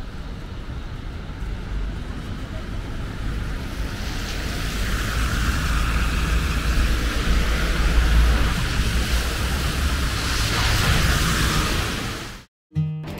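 Outdoor street noise in falling snow: wind rumbling on the microphone, with the hiss of traffic on a wet, snowy road. The hiss swells after about four seconds and stays up until near the end.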